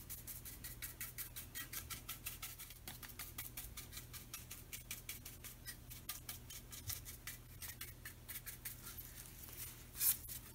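Bristle paintbrush dabbing paint onto a wooden wagon wheel in quick, faint scratchy strokes, about six a second.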